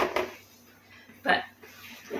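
A woman's voice saying one short word about a second in; otherwise a quiet room.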